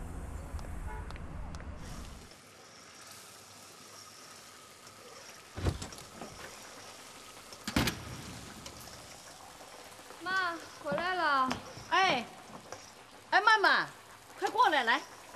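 A low traffic rumble cuts off about two seconds in; then faint frying-pan sizzle with two sharp clanks of a metal spatula against the pan, and a woman's voice calling out in the last few seconds.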